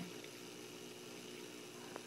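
A faint, steady mechanical hum with a light hiss, with a single small click near the end.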